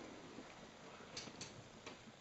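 Faint rustling and scraping of leather-gloved hands working in a hole in a drywall ceiling, with two soft clicks a little after a second in.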